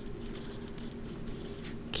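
Handwriting on paper: the soft scratch of a pen tip moving across the sheet, with a faint steady hum underneath.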